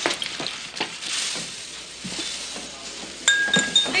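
Kitchen clatter of plates and pans being handled over a frying sizzle, with a few ringing clinks of crockery near the end.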